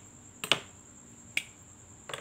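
Three sharp plastic clicks from marker pens being handled and uncapped, two close together about half a second in and a third about a second and a half in, over a faint steady high-pitched whine.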